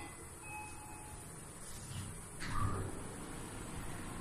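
Elevator car standing at a floor with a low steady hum, then its doors starting to open about two and a half seconds in, with a rush of noise and a short thud.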